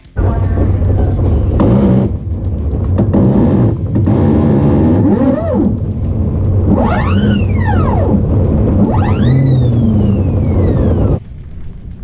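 Electric land-speed streamliner on a run: a loud, steady low rumble of wind and drivetrain. Twice in the second half comes a whine that rises and then falls, the electric motor revving freely once the drive belt has snapped. The sound cuts off suddenly near the end.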